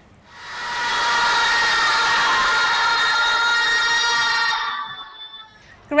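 A hall full of schoolchildren shouting goodbye together as one long, drawn-out cry, heard over a live video-call link. It swells in about the first second, holds steady, and fades out near the end.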